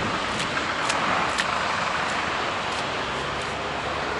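Steady city traffic noise, with a few faint clicks of footsteps on wet, muddy ground.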